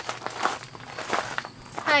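A person shifting about and handling wooden boards: scattered light knocks and rustles, with a spoken "hi" at the very end.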